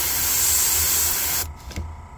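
Master Airbrush dual-action airbrush spraying paint in a steady hiss, then cutting off sharply about one and a half seconds in.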